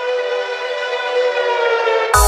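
Progressive psytrance music with no beat: a sustained, siren-like synthesizer tone rich in overtones, its pitch sliding downward near the end.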